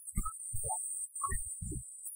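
Worship music from the keyboard heard mostly as deep bass thuds, about four of them in two pairs, with only brief scattered higher notes between.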